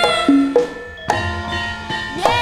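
Javanese gamelan ensemble music with sharp drum strokes and ringing metal tones. A sung note ends just as it begins, the music dips briefly about half a second in, and then the drum strokes come back in.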